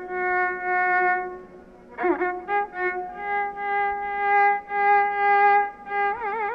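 Carnatic violin playing a phrase in raga Yadukula Kambhoji: long held notes with wavering gamaka ornaments, a short pause, then a new phrase that enters with a swoop about two seconds in and settles on a long sustained note.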